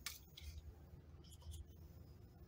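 Faint handling sounds of small plastic measuring cups on a countertop: a sharp click at the start, then light scrapes about a second and a half in, over a low steady hum.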